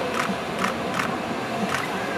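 Onlooker ambience with about four short, sharp clicks at uneven spacing, typical of visitors' camera shutters firing.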